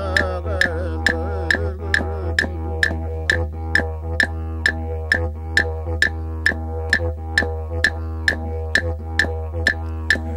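Background music built on a steady didgeridoo drone, with sharp percussive clicks keeping an even beat of about two a second and a wavering melodic line fading out in the first second or so.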